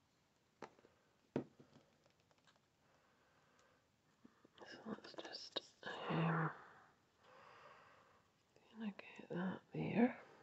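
A woman's soft whispered muttering to herself, with a brief low hum, in two stretches in the second half. Two light clicks come in the first one and a half seconds.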